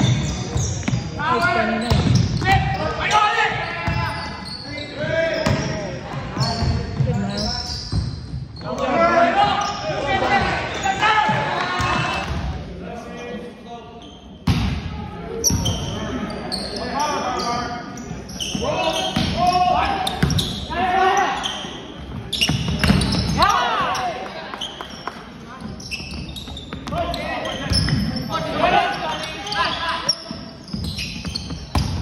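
Indoor volleyball play: the ball struck by hands again and again in serves, passes and spikes, with players and onlookers calling out, all echoing in a large gymnasium.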